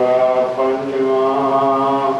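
A man chanting Gurbani (Sikh scripture) in a slow, intoned recitation, holding each syllable on a steady note, with a short break about half a second in.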